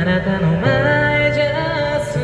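A young man singing a song into a handheld microphone over an instrumental accompaniment, the voice amplified for a street performance.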